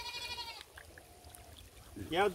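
A single short animal call right at the start, followed by a faint, thin, steady tone lasting about a second.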